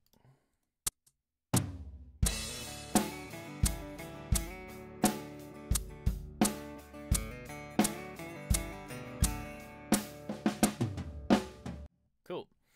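Multitrack drum kit recording with a DI acoustic guitar playing back at 86 BPM, one beat slower than the 87 BPM it was recorded at, slowed by Elastic Audio time-stretching. It starts about a second and a half in, with a steady beat about 0.7 s apart, and stops just before the end.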